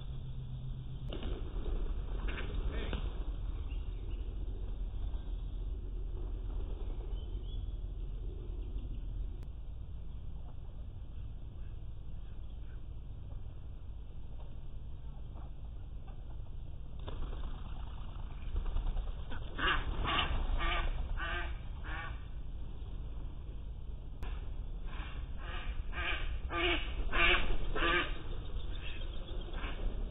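Young mallard ducks quacking in two runs of short repeated quacks, about three a second, the second run louder and longer, over a low steady outdoor background.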